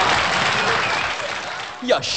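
A crowd applauding at the end of a song: an even clatter of clapping that fades away toward the end.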